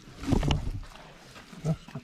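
A person's short, grunt-like voice sounds: a rough, loud one about half a second in and a brief one near the end.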